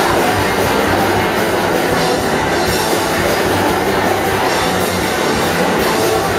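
A live rock band playing loud and steady: electric guitars, electric bass and a drum kit with cymbals.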